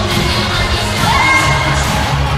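Many children shouting and calling out in a hall over loud dance music with a steady bass, with one high held cry about a second in.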